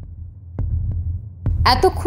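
Low, steady throbbing hum, a background drone in an audio-drama mix, with a few faint clicks. A woman starts speaking near the end.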